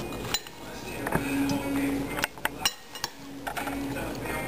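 Metal spoon clinking and scraping against a glass bowl as a salad is tossed, with several separate clinks.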